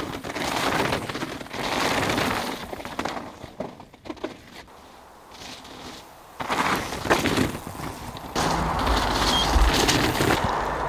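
Downhill mountain bike ridden fast past on a loose, rocky dirt trail: tyres rolling and scrabbling over grit and stones, with rattling from the bike. It is loud for the first few seconds, quieter in the middle, and loud again from about six seconds in.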